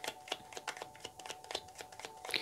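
A deck of tarot cards being shuffled by hand: a quick, even run of soft card clicks, about six a second.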